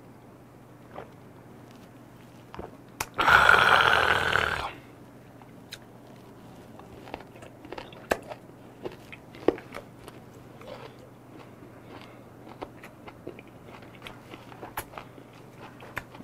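A man eating, with many small wet crunching and chewing clicks as he chews pieces of fermented skate dipped in hot jjamppong broth. About three seconds in comes one loud breathy mouth noise, a slurp or hard exhale lasting about a second and a half. A low steady hum runs underneath.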